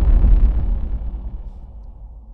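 Deep rumbling tail of an explosion sound effect, fading away steadily as its higher, crackling part dies out within about a second.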